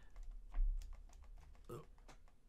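Rapid light clicks and taps of hard resin model parts being handled and fitted together on a figure's hand, the loudest about half a second in.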